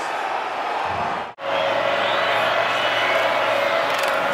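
Stadium crowd noise from a large football crowd, a steady wash of many voices. It drops out briefly about a second and a half in, where the footage cuts, and resumes at the same level.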